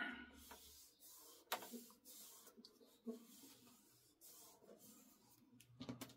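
Faint rustling and soft taps of paper: strips of patterned paper being pressed and smoothed onto a spiral-bound journal page and handled.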